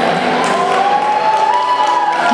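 Crowd applauding and cheering in a large hall, over music with one long held note that rises slowly in pitch.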